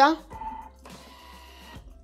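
Orange juice poured from a small glass through the lid opening into a Thermomix mixing bowl: a faint liquid trickle lasting about a second, over soft background music.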